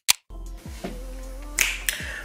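A few sharp snap-like clicks at the very start, like a finger-snap transition effect, followed by a low steady hum with faint music underneath.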